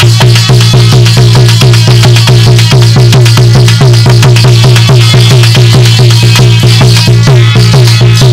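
Instrumental interlude of North Indian folk music: a hand drum plays a fast, even beat of about five to six strokes a second over a steady low drone.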